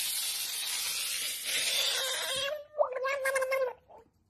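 A Budgett's frog screaming in defence while being held: a long, harsh, hissing scream lasting about two and a half seconds, then a shorter pitched cry near the end.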